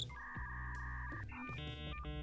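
Dial-up modem connecting sound effect: a held two-note electronic tone, then a different cluster of tones from about one and a half seconds in, over low background music.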